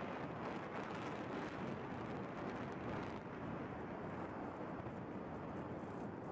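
Distant rumble of a row of apartment blocks being brought down by explosive demolition: a steady roar with no single blast standing out, its hiss easing slightly about three seconds in.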